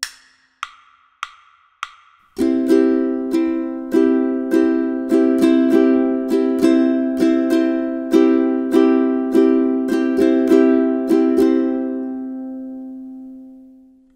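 Four evenly spaced clicks count in, then a ukulele strums a C major chord in a syncopated offbeat strum pattern, with notes placed between the beats. The last chord is left to ring and fades out.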